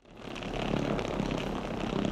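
Steady rumbling of a rolling suitcase's wheels on a hard floor, fading in at the start.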